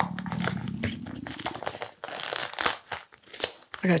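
Plastic carrier sheet and painter's tape crinkling and crackling as they are peeled off a dried gold leaf skin, with sharp little crackles through the second half. A low vocal hum sounds over the first two seconds.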